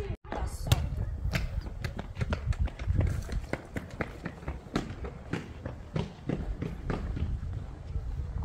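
Footsteps on paved ground at a walking pace of about two to three steps a second, with low wind rumble on the microphone. The sound drops out briefly just after the start.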